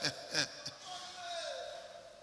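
A preacher's voice over a church PA: a few short, clipped words with a couple of low thumps in the first second, then a faint drawn-out tone that slowly falls in pitch as the hall goes quieter.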